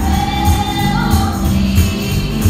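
Gospel song: voices singing a held note that steps up in pitch about a second in, over a steady tambourine and a bass beat.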